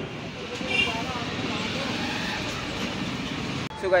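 A steady rushing outdoor background noise, with a faint voice about a second in; it stops abruptly near the end.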